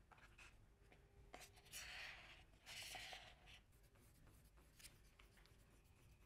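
Faint scraping of a wooden stir stick against the side of a thin plastic cup of epoxy resin as it is mixed, in two short scratchy passes about two and three seconds in, with a few small plastic clicks.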